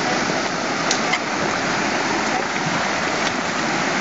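Fast-flowing creek water rushing steadily, an even, unbroken wash of noise.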